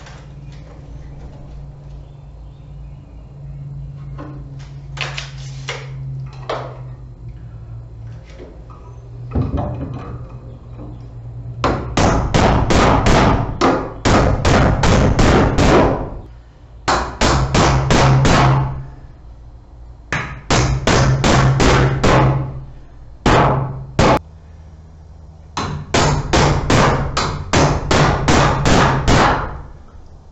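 Claw hammer nailing a blue plastic electrical box to a wooden wall stud. After a quieter start, the blows come in several quick runs from about a third of the way in.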